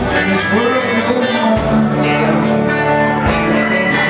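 Live country-rock band playing, with drums, acoustic guitar and keyboard, during an instrumental passage of the song.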